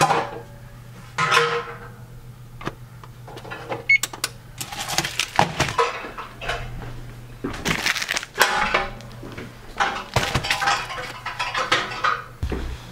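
Kitchen handling noises: irregular rustling and clattering as a boxed frozen pizza and a pot are moved about a glass-top electric range, with one short beep from the GE range's oven control keypad about four seconds in, over a steady low hum.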